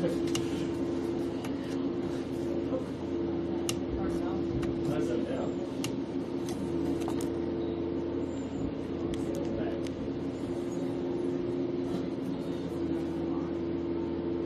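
A steady low hum under faint distant voices, with a few short sharp knocks scattered through.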